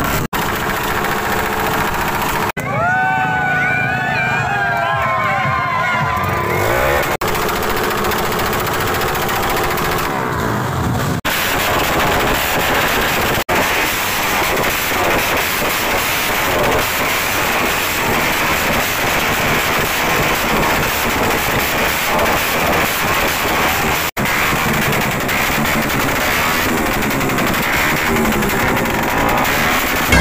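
Drag-tuned motorcycle engines revved hard through open racing exhausts, loud and continuous, with abrupt jumps where clips are cut together. The exhaust is run hot enough to glow red.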